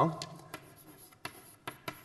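Chalk on a blackboard: a few short, separate strokes and taps of the chalk as words are written, spread across the pause.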